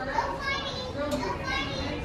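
Children's voices and chatter, several kids talking and calling out at once.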